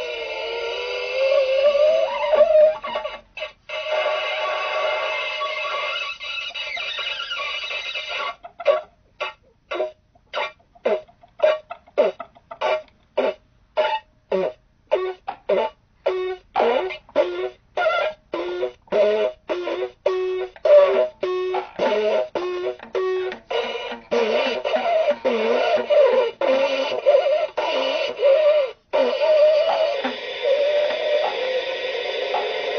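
Experimental music on a keyed, hurdy-gurdy-like string instrument: sustained buzzy notes that slide in pitch. About eight seconds in they break into a long run of short, chopped notes, about two a second, before sustaining again for the last few seconds.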